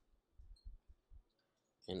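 About four soft clicks in quick succession from a computer mouse.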